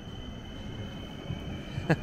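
ŁKA Stadler FLIRT electric multiple unit rolling slowly along the platform toward the listener after setting off, a low steady rumble that grows a little louder.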